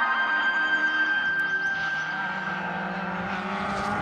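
Touring race car engines running on the circuit as a pack passes through a corner, alongside a held music note that fades out in the first half.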